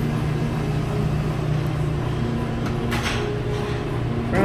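Stainless-steel roll-top buffet warmer lid rolled shut, a brief metallic sound about three seconds in, over a steady low hum.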